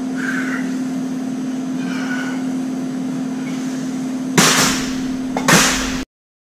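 Dumbbells clanking twice near the end, about a second apart, during dumbbell reps, over a steady low hum.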